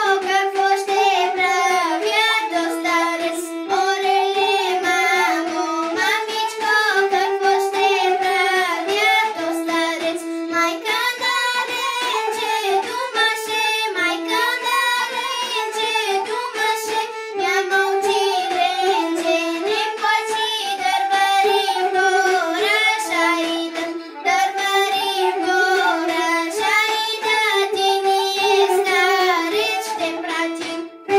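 A young girl singing solo in the Bulgarian folk style, a sustained melody of held and gliding notes. The line breaks briefly about 24 s in.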